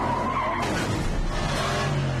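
Car tyres squealing in a hard skid as the car swerves, the squeal fading about half a second in, followed by a lower descending tone near the end.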